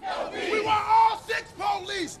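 A man shouting several short, high-pitched phrases, with protest-crowd noise behind him.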